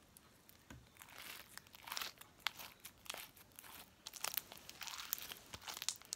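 Stiff white homemade slime being squeezed and kneaded by hand, giving irregular crackling and clicking pops. The slime is still hard and not stretchy.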